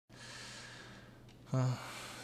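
A man breathes out in a long, soft sigh, then gives a short voiced 'uh' about one and a half seconds in.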